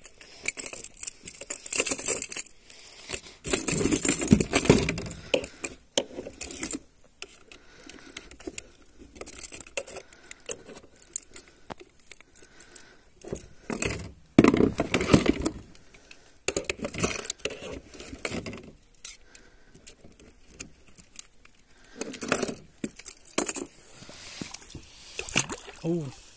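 Metal pliers and a hooked lure clinking and rattling against a plastic kayak deck while the hooks are worked free of a fish, in irregular bursts of clicks and knocks with quieter pauses between.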